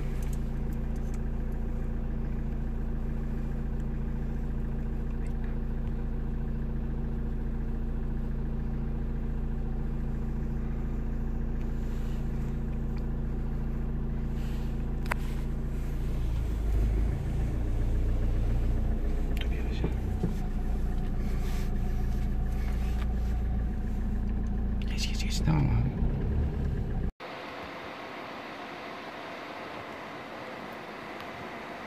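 Car engine heard from inside the cabin, running with a steady low hum. About 16 seconds in its pitch and level shift as the car gets moving. Near the end the sound cuts off suddenly to a quieter, even hiss.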